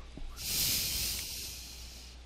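A person breathing out into a close microphone: one breathy exhale that starts about half a second in and fades out over about a second.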